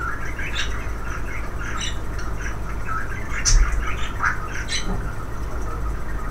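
Pet bird giving short, high chirping calls scattered through, over a steady low hum.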